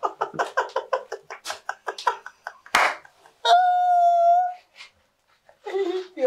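A man laughing in quick bursts, about five a second, in reaction to a painful first spinal adjustment. Then comes a sharp gasp and a single long held cry lasting about a second.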